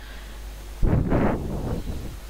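A low steady hum from the narration microphone, then a gust of breath on the microphone that starts suddenly about a second in and lasts about a second.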